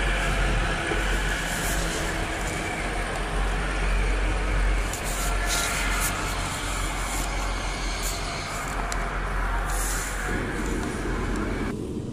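Passenger train running, heard from inside the carriage: a steady rumble of wheels on rail with a few brief sharper sounds along the way. Near the end it switches suddenly to a duller, quieter cabin hum.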